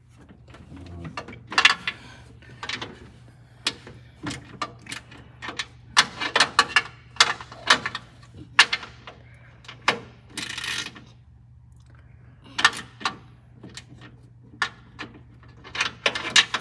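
Hand tools working the radiator's transmission cooler line fittings: a run of irregular metallic clicks and clinks, with a longer scrape about ten seconds in.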